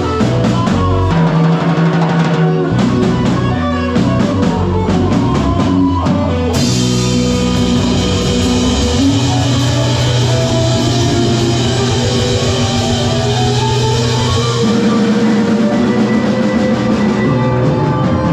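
Live band playing rock music with drum kit, electric bass and keyboard. The first six seconds are a run of sharp drum hits; then cymbals crash in and the full band plays on steadily.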